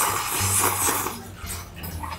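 A person slurping spicy noodle soup from a small bowl held to the lips: a loud, noisy slurp through the first second or so, then quieter.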